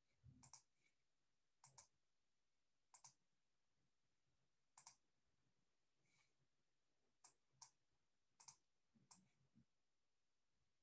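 Faint computer mouse clicks, about nine of them at irregular intervals, most heard as a quick double tick of press and release.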